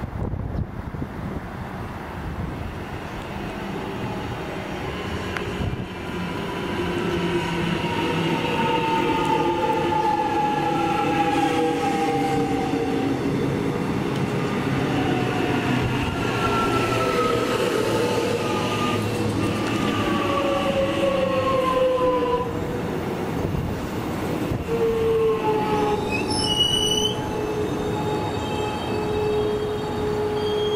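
X'trapolis electric train slowing into the platform: the whine of its traction motors falls steadily in pitch as it brakes, with wheel squeal. It settles into a steady electrical hum once stopped. Near the end comes a brief run of high chiming tones.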